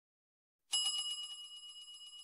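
A bell sound effect for the notification-bell icon of an animated subscribe button: one ring that starts suddenly under a second in and fades gradually.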